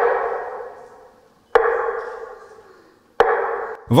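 A struck bell-like chime tolling three times, about a second and a half apart, each stroke ringing out and dying away, as during a minute of silence.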